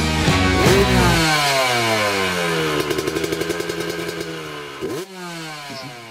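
Motorcycle engine dropping from high revs, its pitch falling for about two seconds, then running low and steady with rapid even firing pulses before fading out about five seconds in.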